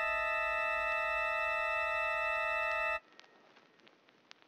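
Reason 12's Parsec software synthesizer holding one steady, unchanging note with a few bright overtones for about three seconds, then cutting off suddenly. Faint clicks follow near the end.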